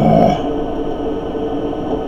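A man's brief murmur at the very start, then a steady electrical hum with a few fixed tones in it.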